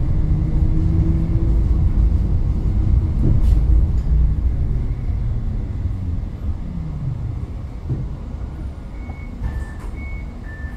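Bozankaya low-floor tram rolling on its rails with a low rumble and a motor hum that falls in pitch as it slows to a stop, growing quieter. Near the end a repeating high-low electronic beep starts, about two notes a second.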